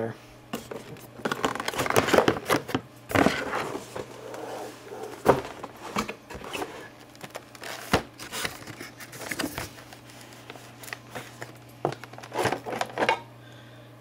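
Clear plastic blister packaging being handled and pulled open: irregular crinkling and crackling with sharp clicks, over a steady low hum.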